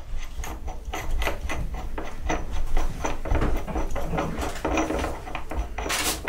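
Steel nut being turned by hand off the threaded arbour of a spindle moulder cutter block: a run of light metallic clicks and scrapes, several a second.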